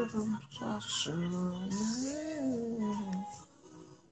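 A man's voice singing slowly, with long held notes that rise and fall in pitch, fading out after about three seconds.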